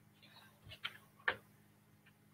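Marker pen tapping and stroking against a whiteboard as letters are written: a few short clicks, the loudest about 1.3 seconds in.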